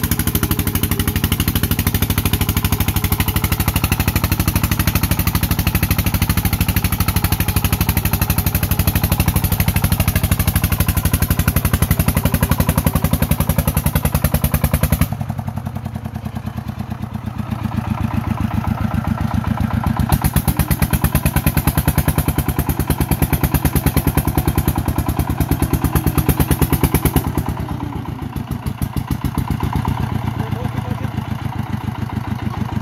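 Single-cylinder diesel engine of a Vietnamese công nông two-wheel-tractor vehicle chugging hard under load as it climbs a rocky hill, with a fast, even firing beat. The sound changes abruptly about halfway through and dips briefly near the end.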